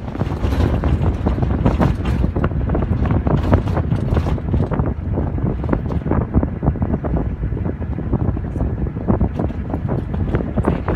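Wind buffeting the microphone while riding in an open-top safari vehicle on a dirt track, over a steady engine and road rumble with frequent small knocks and rattles from the vehicle.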